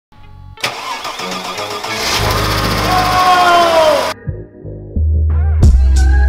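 Produced channel intro: a loud noisy swell with tones falling in pitch, cut off abruptly after about four seconds. About five seconds in, a bass-heavy music beat with sharp drum hits begins.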